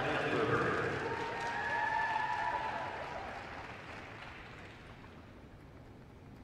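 Applause from a small arena crowd at the end of an ice-dance routine, dying away over the last few seconds.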